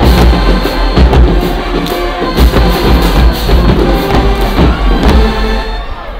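Full HBCU-style marching band playing loudly: massed brass and sousaphones over a drumline with pounding bass drums in a driving beat. The music breaks off just at the end.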